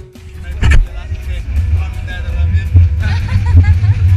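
Low, gusting rumble of wind and boat noise on an action camera aboard a small open fishing boat, with one sharp knock about a second in and indistinct voices near the end.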